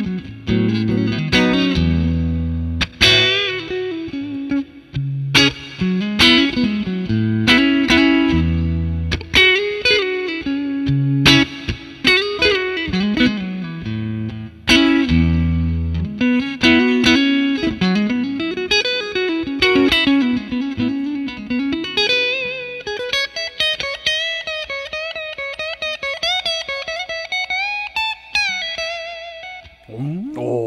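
Electric guitar, a Fender Stratocaster played through a Wampler Pantheon Deluxe dual overdrive pedal on its Transparent Boost preset into a Fender '65 Twin Reverb amp, giving a very clean tone. Chords over low bass notes for the first half, then single-note lead lines with string bends and vibrato.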